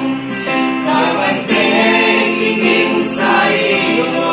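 A small mixed group of men and women singing a Christian praise song together, accompanied by a Yamaha PSR-E473 electronic keyboard and an acoustic guitar.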